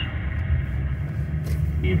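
Steady low rumble of a car being driven at road speed, heard from inside the cabin: tyre and engine noise filling a pause on the radio. Radio speech starts right at the end.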